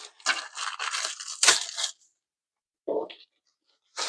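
Thin plastic sleeve crinkling and rustling as it is pulled off a rolled canvas, with a sharp rip about one and a half seconds in, then a brief dull sound near three seconds.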